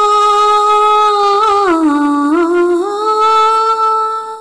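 A high voice humming a slow melody unaccompanied, in long held notes: it steps down with a small waver about a second and a half in, holds the lower note, then rises back and holds again near the end.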